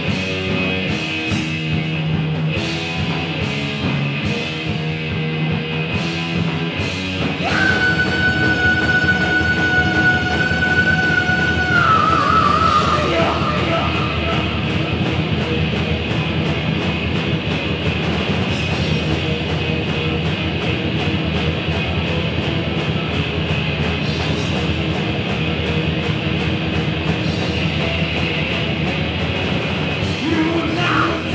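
A live thrash metal band playing loud: distorted electric guitars, bass and drums. A fast chugging riff with steady drum hits opens. About seven seconds in, a single high note is held for about four seconds, then wavers and drops, over the full band.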